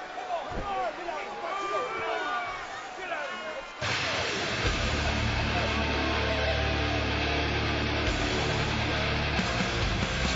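Wrestling arena crowd noise with shouting voices and a thud near the start. About four seconds in, loud music with a heavy, steady bass cuts in abruptly and carries on.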